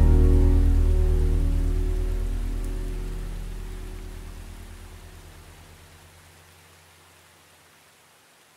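The final chord of a song on acoustic guitar with a deep bass note underneath, left ringing and fading steadily away until it dies out near the end.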